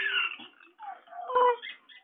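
A baby cooing and squealing in short, high-pitched sounds with brief pauses between them, a falling squeal at the start and a short coo about one and a half seconds in.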